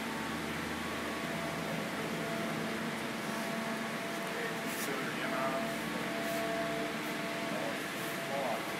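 Steady mechanical hum and hiss in a workshop, with a few faint tones held constant, and faint voices in the background.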